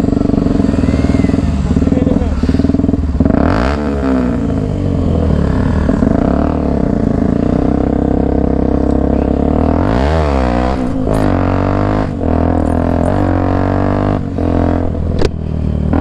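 Motorcycle engine running under way as the bike pulls off and rides along, its pitch sweeping down and back up about four seconds in and again about ten seconds in as the revs change through the gears.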